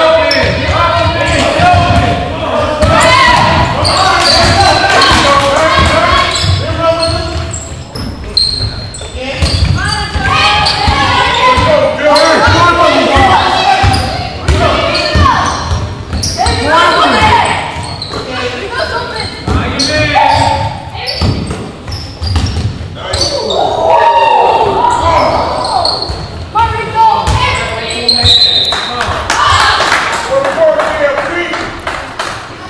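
Basketball game sounds in a large echoing gym: a ball bouncing on the hardwood court amid continual shouting and calling from players and spectators.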